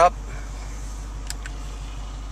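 Motorized touchscreen of a Uconnect navigation head unit tilting closed over its CD/DVD slot: a faint motor whir, then two light clicks about a second and a quarter in, over a steady low hum.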